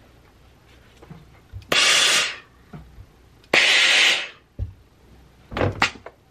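Two hisses of steam, each lasting under a second, from a steam iron shot over a knit neckband, followed near the end by a few short wooden knocks as a quilter's clapper is set down on the pressed seam.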